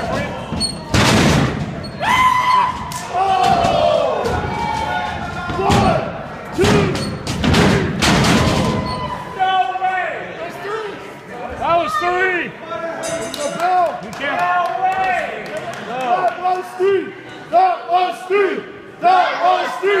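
Wrestlers' bodies hitting the ring mat: a run of loud, sudden thuds in the first half. People shout and call out throughout.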